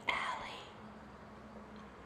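A short whisper at the start, then only a faint steady low hum.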